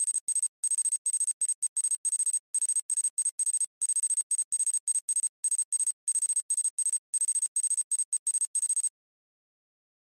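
Text-typing sound effect: a quick, uneven run of short high-pitched electronic beeps, several a second, one per character as the text appears. It stops about nine seconds in.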